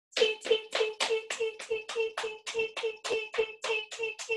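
Hands patting the thighs over jeans in an even run of about fifteen pats, roughly four a second, keeping steady eighth notes.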